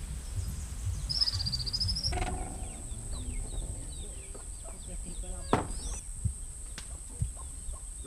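Birds calling: a high wavering call about a second in, then many short chirps, with a sharp knock about five and a half seconds in.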